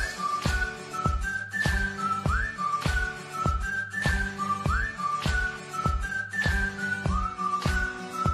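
Background music: a high, whistle-like melody of short notes with occasional upward slides over a steady drum beat, beginning abruptly as a new track.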